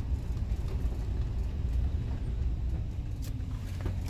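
Low, steady rumble of a campervan's engine and road noise, heard from inside the cab while driving.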